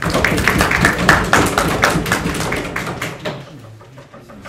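Small audience applauding, starting all at once and dying away after about three seconds.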